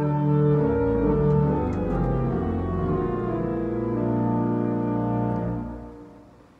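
Pipe organ playing a short example of closely spaced chromatic notes: sustained chords that shift by small steps. The chords start suddenly and fade away near the end.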